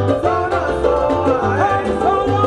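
Live salsa band playing: singers over keyboard, congas, horns and a rhythmic bass line.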